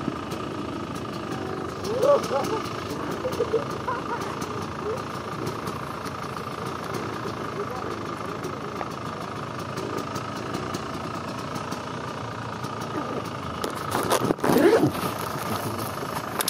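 Dirt-bike engines running steadily at idle close by, a continuous hum, with people's voices breaking in briefly a couple of times and more loudly near the end.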